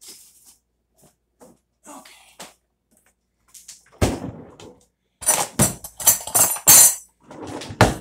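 Kitchen handling noises: faint clicks, then one loud knock about four seconds in and a quick run of sharp knocks and clatters, as things are set down on a kitchen counter.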